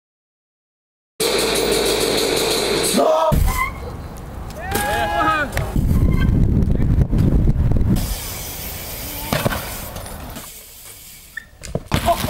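A person's shouting voice, rising and falling, about five seconds in, over a loud low rumble of outdoor noise.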